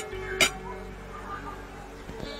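Two sharp clinks of a metal spoon and fork against a plate, one at the start and one about half a second in, over faint background music.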